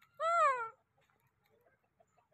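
Baby macaque giving one short, high call, about half a second long, that rises slightly and then falls in pitch.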